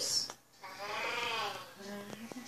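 A person's voice making a drawn-out wordless sound about a second long, its pitch rising and then falling, after the tail end of a louder exclamation at the start.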